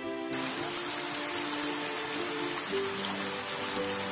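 Background music of held notes, joined about a third of a second in by the steady rush of a small waterfall pouring into a rocky pool.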